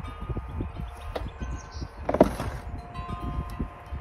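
Shovel scraping and turning a potting-soil mix of compost, peat moss, vermiculite and perlite in a wheelbarrow, with a few knocks and a louder knock about two seconds in. Faint steady ringing tones sound in the background.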